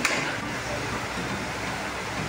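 Steady background hiss of room noise with faint low voices, and a brief rustle right at the start.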